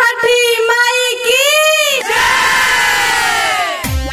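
A high-pitched voice calling out in long, bending cries, then about halfway through a falling whoosh sweep. A drum beat kicks in just before the end.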